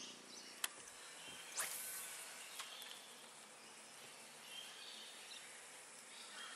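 Faint outdoor ambience with insects buzzing, a small click just over half a second in and a brief rushing noise near two seconds.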